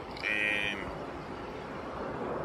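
A single short bird call, about half a second long, shortly after the start, over a steady background hum.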